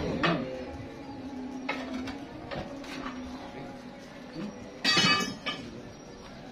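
Scattered metallic clanks and knocks from a sawmill band saw and its log carriage, with a loud metal clatter about five seconds in, over a steady low machine hum.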